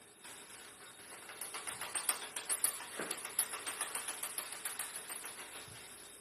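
Countertop blender running on fruit and water, with a fast rattling clatter of fruit pieces against the jar and blades that builds in the middle and tapers off as the fruit turns to purée.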